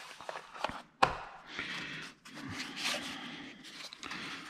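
Small cardboard box and its packaging being handled by hand: a few light clicks and taps, a sharper knock about a second in, then rubbing and scraping as the inner tray is worked out of the box.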